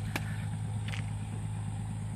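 A motor running steadily with a low, even hum, with a sharp click just after the start and a short faint scrape about a second in.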